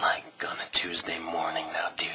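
A man's voice speaking; the words are not made out.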